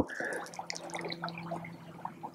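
Horn spoon dipping and scraping in thick corn-flour soup in a small pot: soft wet clicks and small scrapes, scattered and quiet, over a faint steady hum.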